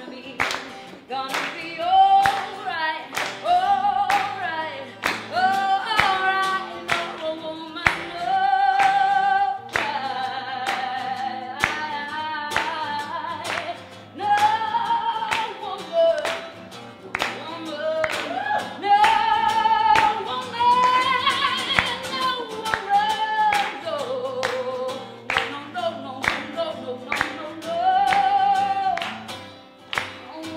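Live female singing with guitar accompaniment. The singer holds long notes with vibrato, and sharp percussive clicks run under the music throughout.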